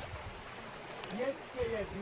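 Faint speech over a steady rushing background noise.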